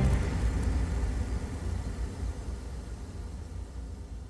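The closing whoosh of an electronic TV intro jingle: a noisy sound with a low rumble, fading steadily away.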